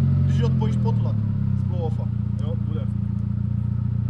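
Volkswagen Golf's engine idling steadily.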